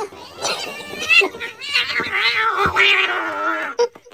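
Domestic cat yowling in protest as its pillow is pulled away: a few short rising calls, then one long drawn-out call in the second half.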